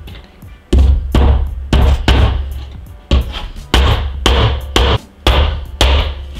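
Claw hammer striking picture-hook nails into the wooden frame of a canvas lying on a tabletop. About ten uneven blows come roughly two a second, each a sharp knock with a dull thud.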